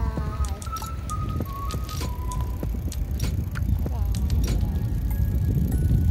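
Wind rumbling against the microphone throughout, with a few clicks. Over it, in the first two seconds, a short run of high held notes stepping up and down.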